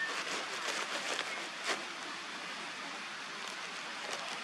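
Irregular rustling and small clicks of hands rummaging through a gear bag, over a steady outdoor hiss.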